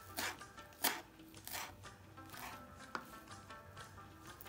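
Kitchen knife chopping fresh coriander on a wooden cutting board: about five uneven strokes, each a short crisp chop through the leaves onto the wood.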